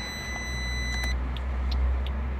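Low steady rumble of the Peugeot 108's 1.0-litre three-cylinder engine idling, heard from inside the cabin, growing slightly louder toward the end. A faint high electronic whine stops about halfway through.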